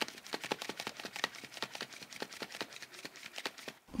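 A sealed foil blind bag being shaken, crinkling with the small plastic figure and packets inside knocking against it in rapid knocks, about ten a second. The thudding is, to the shaker, the sign of a regular-sized baby figure rather than a newborn.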